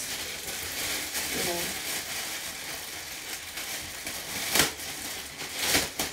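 Clear plastic packaging bag crinkling as it is handled and pulled off a cap: a steady rustle with two louder crackles near the end.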